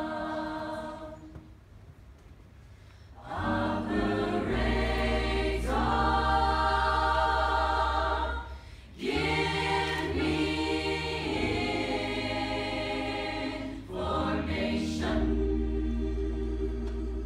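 A choir singing with band accompaniment, a low bass line sounding under the voices. The music drops away about two seconds in and comes back strongly, with short breaks near nine and fourteen seconds.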